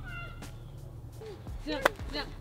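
A golf club striking a ball off a hitting mat: one sharp click near the end, after a small child's brief high-pitched vocal sound at the start.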